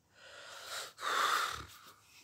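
A person breathing close to the microphone, with no voice: a softer breath in the first half, then a louder breath about a second in that lasts about half a second.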